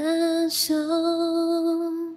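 A woman's voice singing a long held note in a slow ballad, with a short break and hiss about half a second in, over soft piano underneath.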